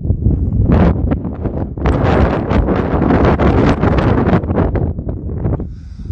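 Wind buffeting the microphone: a loud, gusty rumble with crackles, strongest in the middle and easing near the end.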